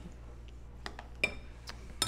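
Metal utensils clinking against a glass mixing bowl as cooked spaghetti squash is scooped: a few light clinks in the second half, one of them louder and ringing.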